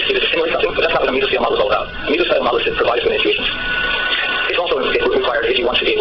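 Speech: a voice talking continuously with no break.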